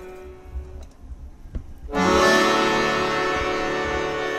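Piermaria button accordion, nearly silent for about two seconds, then comes in with a loud long held chord, the closing chord of the song.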